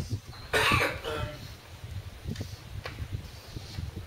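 A single short cough from a man about half a second in, followed by a low background rumble.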